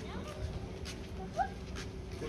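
Low steady hum and rumble from a Gree mini-split outdoor unit running on its first test. About one and a half seconds in comes a short rising whine from an animal.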